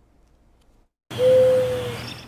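Near silence for about a second, then a sudden cut in to loud outdoor ambient noise with a single steady held tone running through it, easing slightly toward the end.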